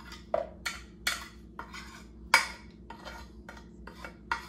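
A utensil tapping and scraping powdered spices off a plate into a Ninja blender's plastic jar: a string of short, sharp taps, about two a second, the loudest a little past halfway.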